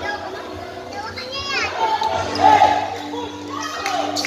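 Basketball game sounds: players' and spectators' voices and shouts, a basketball bouncing on the court, and a brief cluster of high shoe squeaks about a second and a half in.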